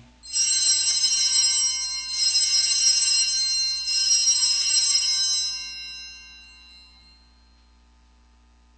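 A set of altar bells rung in three long shakes, with many high, bright tones, then dying away near the end. They mark the elevation of the host at the consecration of the Mass.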